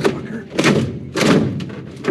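Carbon fiber cloth being lifted and handled: a sharp knock at the start, then two swishing, rustling bursts, about half a second and a second and a quarter in.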